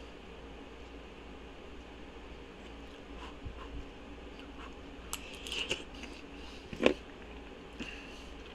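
Small eating sounds: a spoon clicking against a bowl and chewing, over a steady low room hum. There are a few soft clicks, then a cluster of them, and one short louder knock a second before the end.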